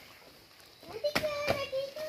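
A child's voice, starting about a second in, holding one long, steady call, with a couple of sharp clicks alongside.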